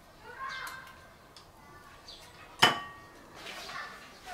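A single sharp clink with a short metallic ring about two and a half seconds in, a utensil knocking against a stainless steel bowl, amid quiet handling sounds while shrimp are being cleaned.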